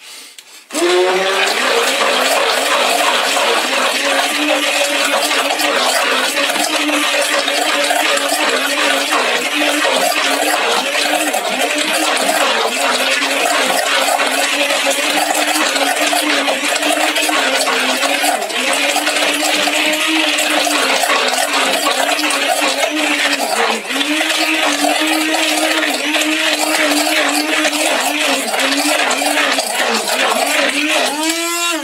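Hand-held immersion blender running continuously in a pot of thick red lentil hummus, starting about a second in. Its motor pitch wavers as it works the stiff purée, with a brief dip in speed near the end. The motor sounds angry: it is labouring under the load of the thick mixture.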